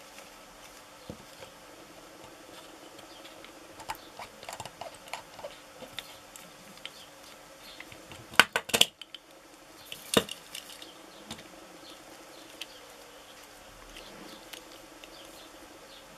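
Small clicks and taps of a hand-sized 3D-printed resin model being handled and squeezed, with a sharp cluster of louder plastic clicks a little past eight seconds in and another about ten seconds in. A steady faint hum runs underneath.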